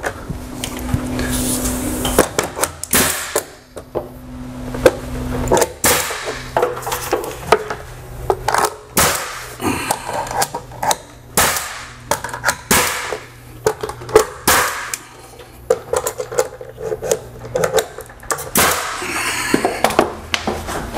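Ridgid pneumatic finish nail gun firing nails through crown molding: a string of sharp shots, often a second or two apart, with a low hum underneath.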